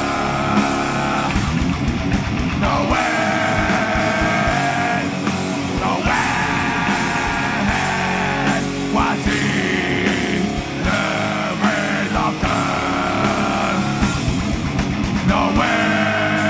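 Live heavy rock band with distorted electric guitars and drums, several vocalists singing together in long held notes of two to three seconds each.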